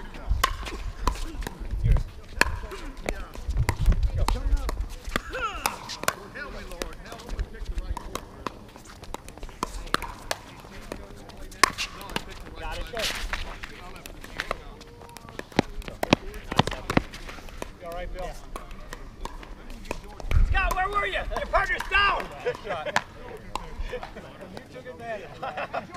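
Pickleball paddles hitting a plastic ball during a doubles rally: a string of sharp pops at irregular spacing.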